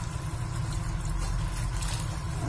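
A steady low motor hum runs throughout, with faint trickling water over it.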